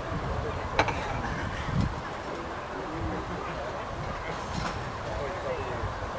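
A single sharp click about a second in, a minigolf putter striking the ball, followed by a softer knock. Steady low wind rumble on the microphone runs under it.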